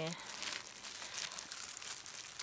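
Crinkling and rustling as a hand in a clear plastic glove grips a dandelion at its base and tugs at its thick root among dry grass and fallen leaves: a dense run of soft crackles.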